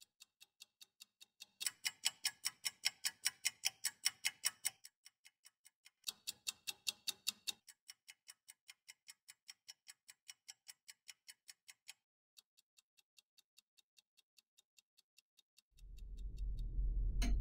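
Twin-bell wind-up alarm clock ticking, about four ticks a second. The ticking swells louder twice in the first half and is faint after that, dropping out briefly near the end.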